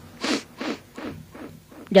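Four short hissing noises close to the microphone, about a third of a second apart, each quieter than the last. Near the end a voice begins to chant.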